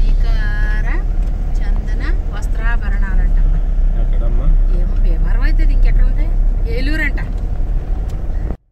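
Car driving on an unpaved dirt road, heard from inside the cabin: a steady low rumble of engine and road noise, with people's voices talking over it.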